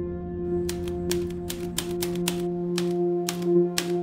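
Typewriter keys struck about a dozen times at an uneven pace, sharp separate clicks over some three seconds, over a steady held ambient music drone.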